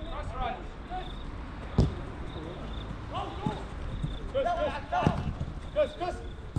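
Players' shouts on a soccer pitch, with a sharp thump of the ball being struck about two seconds in and a smaller knock near five seconds.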